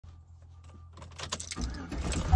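Faint low hum inside a vehicle, then a run of clicks and knocks that grow louder from about a second in.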